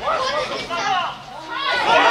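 Voices shouting and calling during a football match. After a short lull about halfway, a louder shout begins to rise near the end.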